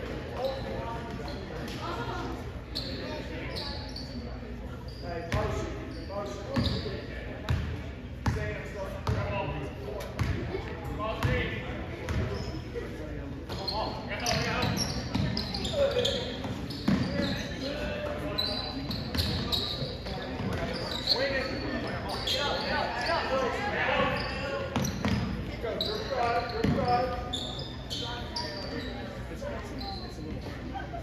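A basketball bouncing on a hardwood gym floor with sneakers squeaking, during a game, amid indistinct voices of players and spectators, all echoing in the large gym.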